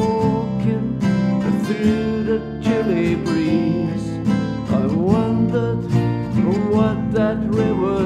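Acoustic blues played on guitars, with an archtop guitar strumming chords.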